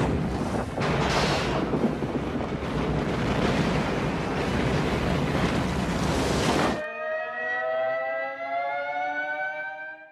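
Loud, steady roar of a film's meteor-strike explosion sound effect as a fireball engulfs a city. About seven seconds in it cuts off suddenly and an air-raid siren takes over, several tones sounding together and rising slowly in pitch as it winds up.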